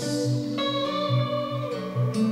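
Acoustic guitar and electric guitar playing together without vocals: a steady run of low picked notes, with long held notes ringing over them from about half a second in.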